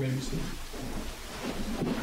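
A spoken "Amen" at the very start, then a steady rustling, rumbling noise of people moving about the room, with faint murmuring near the end.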